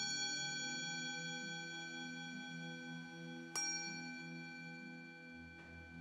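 An altar bell struck at the start and again about three and a half seconds in, each stroke ringing on in a long, slowly fading tone, over soft low instrumental music. The bell marks the elevation of the chalice after the consecration of the wine.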